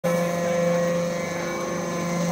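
Hydraulic scrap-metal briquetting press running with a steady, even hum.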